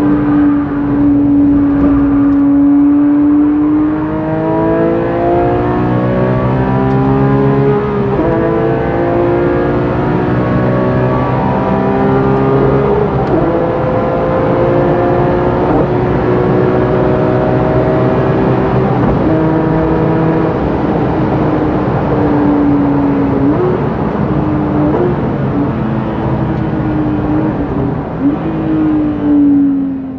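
Porsche 997 GT3 RS Mk2's naturally aspirated 3.8-litre flat-six, heard from inside the cabin under hard acceleration. It climbs in pitch through the gears, with upshift drops about eight, thirteen and nineteen seconds in. It then eases off, and near the end come four short, sharp throttle blips on downshifts under braking.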